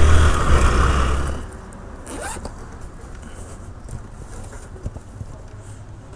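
Motorcycle engine and road noise for about the first second and a half, then cut off suddenly. After that comes the zipper of an insulated delivery bag being pulled open, with faint handling noises.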